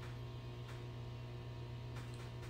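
Steady low electrical hum with faint room tone, and a single faint tick about two-thirds of a second in.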